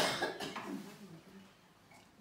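A person's single sharp cough right at the start, fading out within about a second.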